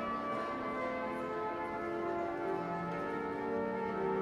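The Wanamaker Organ, a very large pipe organ, playing music in slow sustained chords that change every second or so.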